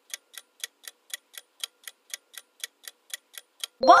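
Countdown-timer sound effect: a clock ticking evenly, about four ticks a second. Near the end the ticking stops and a bright chime rings as a voice begins the answer.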